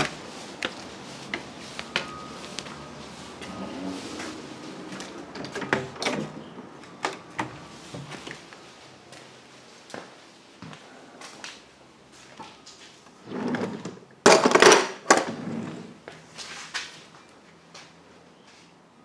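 Footsteps and camera-handling knocks of someone walking into a house and through a small room, with a louder noise lasting about two seconds near the end.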